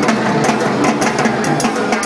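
Live Latin jazz band playing, with timbales and cymbal strikes over upright bass, a dense rhythm of sharp percussion hits throughout.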